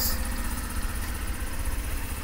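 Honda Super Cub C50's air-cooled single-cylinder 49cc SOHC engine idling steadily.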